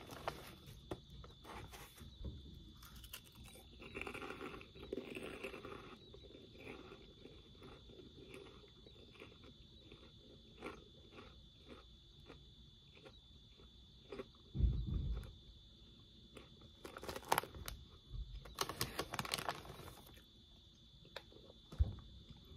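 Mouth chewing crispy fried pork rinds, a rapid run of short crunches with a few louder bites later on. There is a plastic snack-bag crinkle in the first few seconds.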